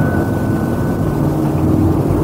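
A steady low hum in the pause between spoken lines, with no voice over it.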